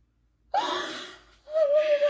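A woman's distraught crying: a sudden, breathy gasping cry that rises in pitch about half a second in, then a long wailing cry on one held, wavering note starting about halfway through.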